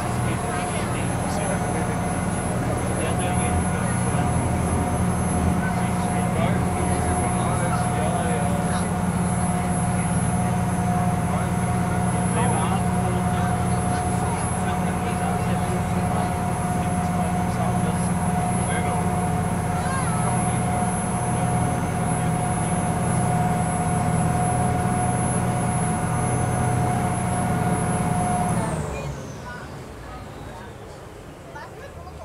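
Vaporetto (Venetian water bus) engine running steadily at cruising speed, heard from inside the passenger cabin as a loud, even drone with a steady whine. About a second before the end the engine eases off and the whine glides down as the boat slows.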